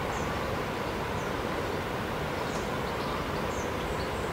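Steady outdoor ambient noise, an even hiss, with a few faint, brief high chirps from birds scattered through it.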